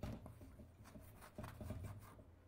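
Faint writing: a string of short scratching strokes, busier in the second half, over a low steady hum.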